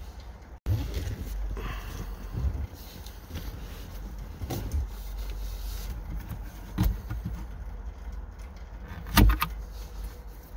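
Light taps and knocks from the stock rearview mirror being worked by hand off its metal mount on the windshield, over low handling rumble, with the loudest knock near the end.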